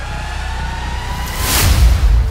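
Cinematic intro sound effect: a deep rumble under a slowly rising tone, building into a loud rush of noise near the end.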